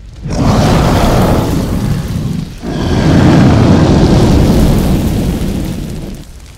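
Loud, deep thunder-like rumbling sound effect in two swells, the second longer, fading out near the end.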